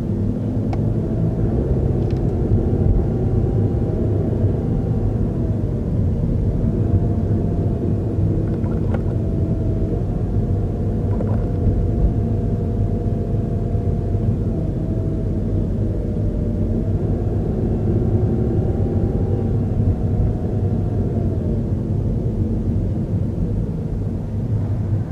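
Steady low rumble of a car driving at city speed, heard from inside the cabin, with road and engine noise. A faint whine above it rises and falls several times as the car speeds up and slows.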